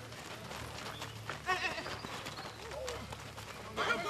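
Men's voices shouting and calling out during a casual football game, over a low rumble of wind on the microphone. A loud shout comes about a second and a half in, and louder calling starts near the end.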